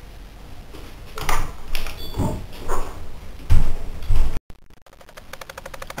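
A few separate knocks and bumps, the loudest a low thump about three and a half seconds in, like objects or furniture being moved in a small room. The sound drops out briefly at an edit, then a fast, even ticking follows.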